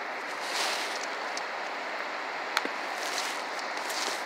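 Steady hiss of background noise, with a brief soft rush about half a second in and a faint click a little past halfway.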